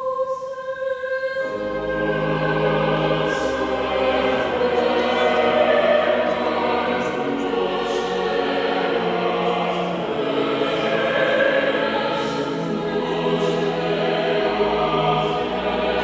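Many voices singing a hymn with low, sustained bass accompaniment. A single held note opens, and the full singing comes in about a second and a half in.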